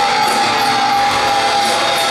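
Live rock band playing loudly: electric guitar and bass over drums, with cymbals striking steadily and one held guitar note running through.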